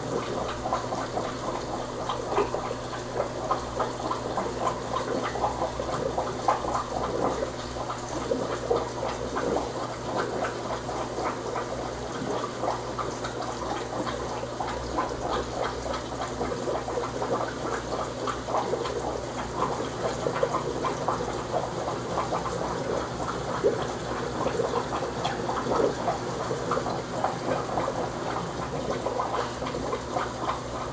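Aquarium water bubbling and gurgling steadily, with dense small splashing crackles, over a low steady hum.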